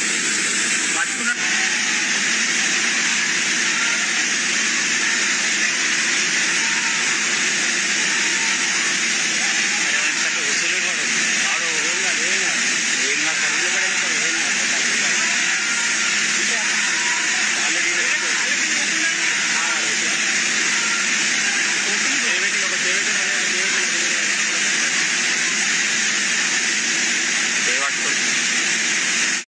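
Loud, steady rush of water pouring through open dam spillway gates, with faint voices underneath.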